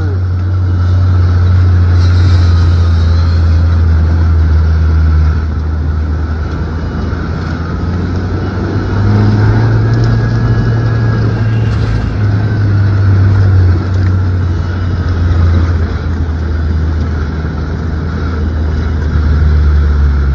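A vehicle engine running loud and low as it drives along a rough dirt track, heard from on board. The engine note dips about five seconds in and picks up again around nine seconds.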